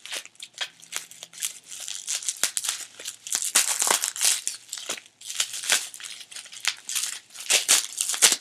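Paper rustling and crinkling as a small memo pad is handled and its sheets are leafed through: an irregular run of short, crisp crackles, busiest around the middle and again near the end.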